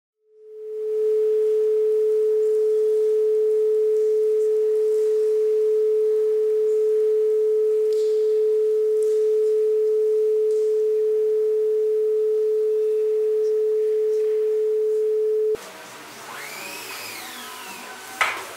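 A single steady, pure, mid-pitched tone fades in over the first second, holds unchanged and cuts off abruptly about fifteen and a half seconds in. After it comes quiet room sound with a few faint small noises.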